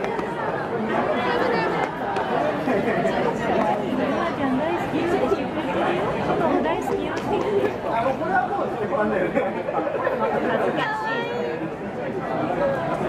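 Crowd chatter: many voices talking over one another in a busy dining hall, steady throughout.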